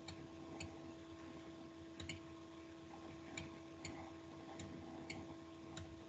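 Faint, unevenly spaced clicks, about ten in all, over a steady low electrical hum: computer mouse clicks as a Street View picture is panned and stepped along.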